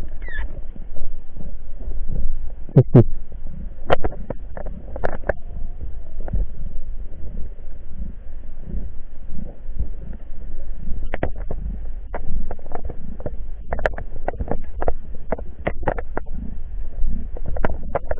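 Underwater sound picked up by a diver's camera: a steady low rumble of water moving against the camera, with irregular sharp clicks and knocks scattered through it.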